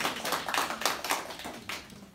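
A small group of people clapping by hand, with the separate claps distinct. The clapping thins out and fades near the end.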